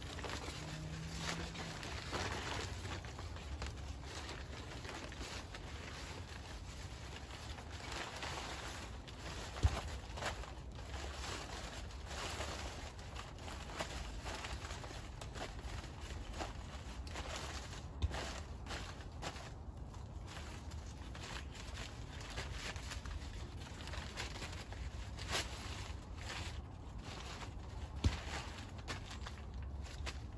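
Brown kraft paper crinkling and rustling as it is handled and spread over the soil, with a few sharper knocks.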